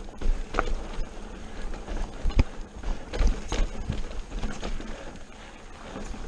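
Mountain bike clattering and knocking over rough rock and dirt trail: irregular sharp knocks from the frame and components as the wheels hit bumps, over a low rumble of wind on the microphone.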